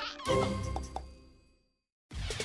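Short cartoon-style music sting that rings out and fades to silence about a second and a half in.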